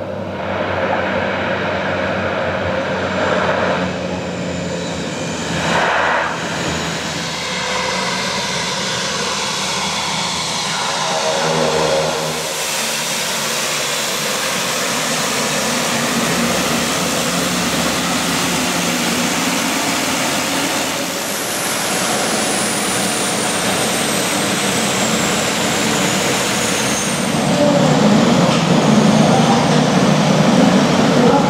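Propeller aircraft engines running loudly and steadily, including the turboprop engines of a Dornier 228. A high engine whine falls slowly in pitch over several seconds past the middle.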